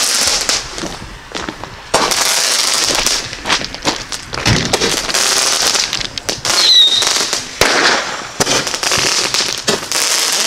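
Fireworks going off: long stretches of loud hissing broken by sharp pops, with a short whistle about two-thirds of the way through.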